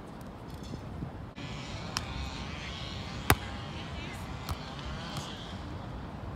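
Sports play: three sharp knocks about a second apart, the middle one loudest, over indistinct background voices and faint high squeaks.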